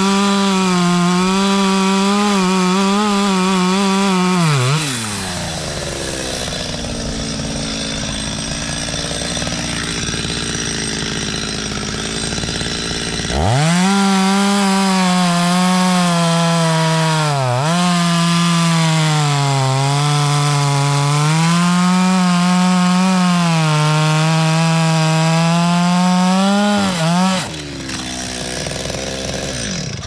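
Small two-stroke chainsaw cutting through a beech trunk at full throttle, its engine note sagging and recovering under load. The cutting stops after about four seconds, the saw runs quietly for several seconds, then it goes back to full throttle and cuts again until near the end. The cutting ends when the chain jumps off the bar, a chain the owner says jumps badly on this saw.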